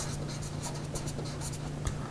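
A Sharpie felt-tip marker writing on paper, a quick run of short strokes as a word is handwritten.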